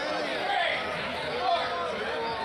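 Crowd of wrestling spectators chattering and calling out, many voices overlapping.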